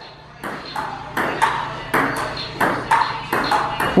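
Table tennis rally: a ping pong ball clicking back and forth off paddles and the table, a quick run of sharp ticks at about three a second.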